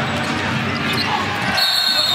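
Basketball dribbled on a hardwood court over steady arena crowd noise. About one and a half seconds in, a referee's whistle blows a steady high note, typically the call of a foul.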